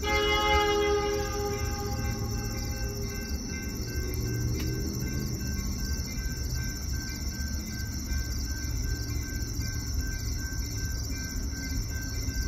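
Horn of CN SD60 diesel locomotive 5484 sounding as it passes slowly, its chord dropping in pitch and fading out over about five seconds, over the low rumble of the train rolling by.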